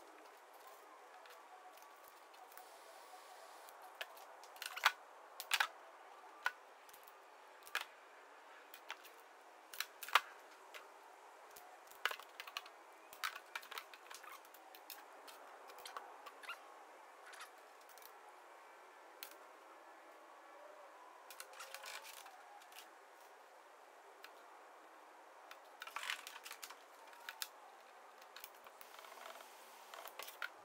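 Small hand tools and wires being handled on a tabletop during wire splicing: scattered sharp clicks and taps over a faint hiss, the loudest about five and ten seconds in.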